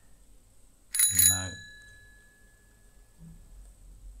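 A single bright bell ding, a sound effect like a notification chime, strikes about a second in and rings out, fading over about a second.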